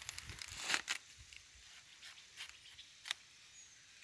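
A knife cutting a hand of plantains off the bunch's thick stalk, with banana leaves rustling. A cluster of scraping, tearing sounds comes in the first second, then a few short clicks, the sharpest a little after three seconds in.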